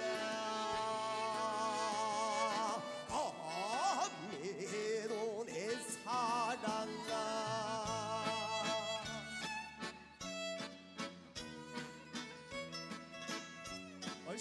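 Live fusion gugak band music: a long, wavering melody line with wide vibrato over sustained accompaniment. About nine or ten seconds in, it changes to a steady rhythmic groove of short, plucked or struck notes.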